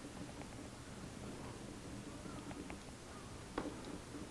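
Quiet workshop room tone with a few faint clicks and light handling noise as the hold-down on a homemade guitar side-bending machine is pulled tight; a slightly sharper click comes near the end.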